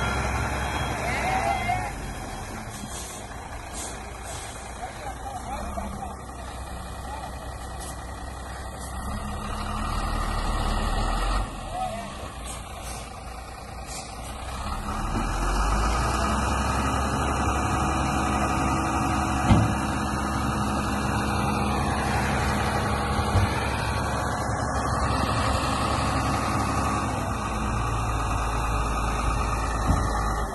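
Sinotruk dump truck's diesel engine running, rising to a louder, steady run about halfway through as the tipper body is raised to dump its load. A sharp knock sounds about two-thirds of the way in.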